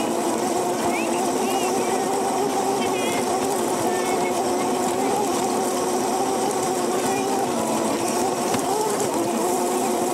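Razor electric go-kart motor whining steadily, its pitch wavering slightly as the kart rolls over rough dirt and grass.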